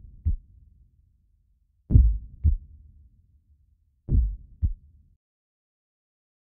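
Heartbeat sound effect: three low double thumps (lub-dub) about two seconds apart, stopping about five seconds in.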